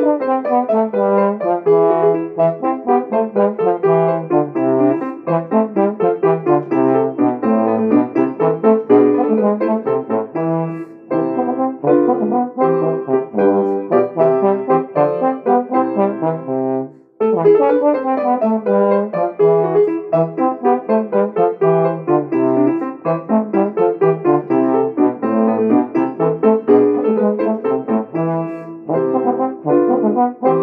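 Trombone playing a Baroque sonata movement over piano accompaniment, a brisk stream of changing notes with one short pause about two-thirds of the way through.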